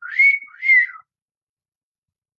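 A person's two-note wolf whistle over about a second: a note that rises and holds, then one that rises and falls away.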